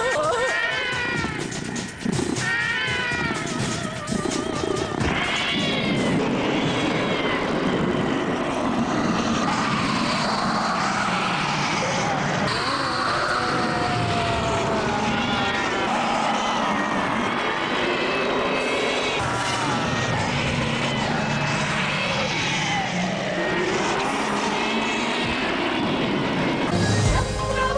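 Repeated animal-like cries, each sliding up and then down in pitch, over dramatic background music; the cries are clearest in the first six seconds.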